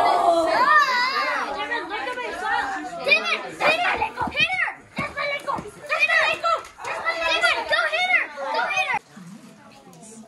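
Excited children's voices, several talking and shouting over one another, the words not clear; the voices drop away about a second before the end.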